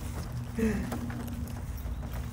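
A woman's brief, short vocal sound about half a second in, over scattered faint clicks and a low rumble.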